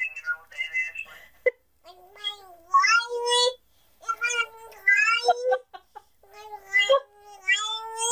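Toddler's high-pitched, drawn-out whiny vocalisations: short babbles at first, then three long wavering calls, each over a second.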